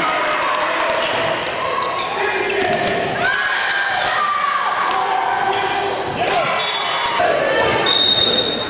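Live indoor volleyball game sound in an echoing gymnasium. Players and spectators call out, and sharp slaps and knocks come from the ball being hit and from feet on the wooden court.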